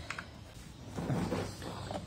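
Faint handling noise: a few light knocks and soft rubbing as things are moved about.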